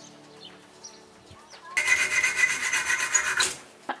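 A metal fitting clamped in a bench vise being cut down by hand. A loud, fast, rhythmic rasping of metal on metal starts a little under two seconds in and stops abruptly after about a second and a half.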